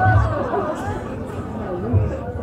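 Several audience members talking over one another at once, a low murmur of chatter with no one voice clear.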